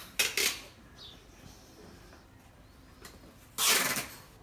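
Two brief bursts of noise, one just after the start and a louder one near the end, with quiet background between.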